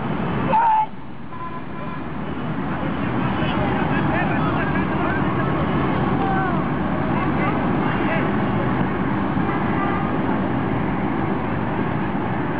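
Outdoor football-pitch ambience: a steady background rumble with scattered distant shouts and calls from players. A brief louder call comes just under a second in, after which the sound drops abruptly.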